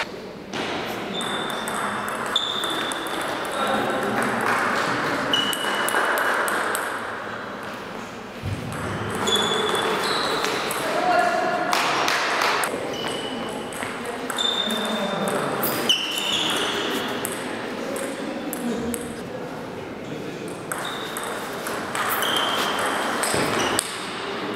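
Table tennis ball being hit back and forth, short high clicks of the ball on rackets and table coming in irregular bursts of rallies with gaps between points. The strikes are heard over indistinct voices in a large hall.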